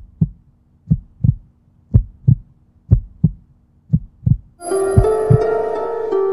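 A heartbeat sound effect: paired lub-dub thumps about once a second, six beats in all. Bright chiming music comes in over the last beats about four and a half seconds in.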